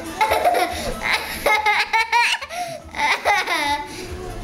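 Young child laughing loudly in several high-pitched bursts.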